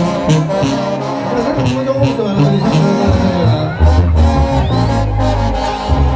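Live Mexican banda music: brass and clarinets over a tuba bass line and a steady drum beat.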